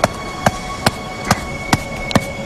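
Background music with a steady ticking beat, about two and a half sharp clicks a second, over a sustained held note.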